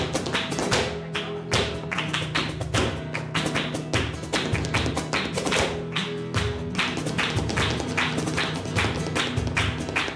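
Live flamenco: a dancer's shoes striking the wooden floor in fast, sharp footwork, with hand-clapping and flamenco guitar underneath.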